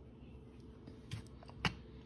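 A spoon scooping in a bowl of creamy butter beans, heard as a few short clicks in the second half, the sharpest about three quarters of the way through.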